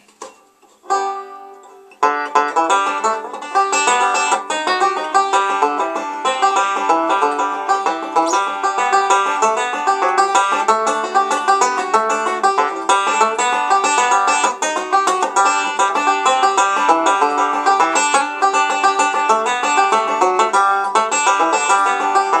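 Solo resonator banjo: one chord rings about a second in, then from about two seconds a fast, unbroken stream of finger-picked notes runs on as the tune's instrumental introduction.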